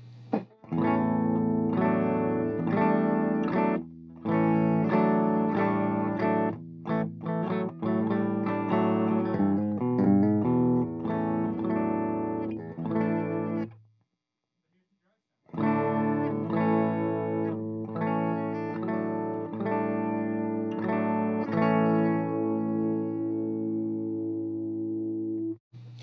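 Heritage H535 semi-hollow electric guitar played through a Marshall JTM45 valve amp with no pedal in the chain: the amp's dry tone. A faint steady amp hum comes first, then chords and single notes. The playing stops dead about halfway for over a second, resumes, and ends on a ringing chord that is cut off near the end.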